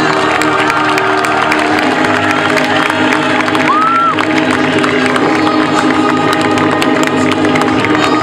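Background music playing while a crowd cheers and applauds, with a short high rising-and-falling call about four seconds in.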